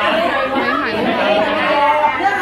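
Several people talking over one another at once: lively overlapping chatter of a group at a table.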